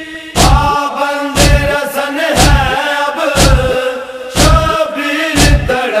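A group of men chanting a Shia noha in unison with long held notes, over a heavy thump struck about once a second, the matam chest-beating that keeps the rhythm.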